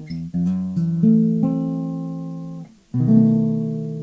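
Acoustic guitar playing a chord progression. Several chords change quickly in the first second and a half, then one is left to ring and is damped a little under three seconds in. A new chord is struck right after and rings out.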